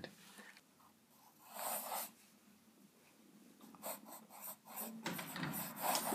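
Steel italic nib of a Sheaffer calligraphy fountain pen scratching across paper as letters are written. There is one stroke about a second and a half in, then a run of short, quick strokes from about four seconds in.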